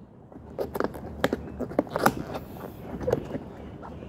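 Rubber facepiece of a Soviet PBF gas mask being stretched and worked by hand around its filter opening: irregular small rubs, creaks and clicks.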